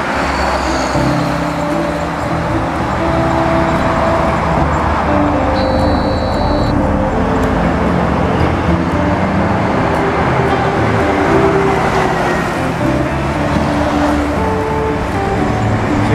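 Steady toll-road traffic noise from passing cars and trucks, mixed with background music of held notes that change pitch step by step.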